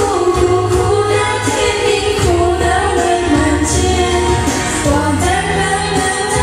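A woman singing karaoke into a microphone over a pop backing track with a steady bass beat.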